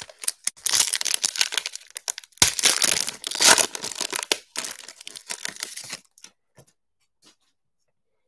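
A foil trading-card pack wrapper being torn open and crinkled by hand. There are two loud spells of tearing and crackling over about four seconds, then lighter rustling.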